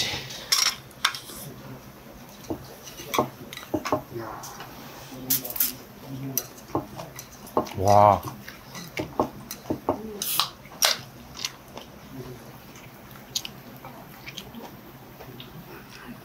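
Metal chopsticks clicking against dishes and tearing into a crisp pan-fried potato pancake, with chewing, in short scattered clicks and knocks. A brief hummed "mm" comes about eight seconds in.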